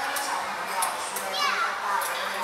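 Children's voices chattering and calling in a large indoor hall, with one child's high, falling call about one and a half seconds in.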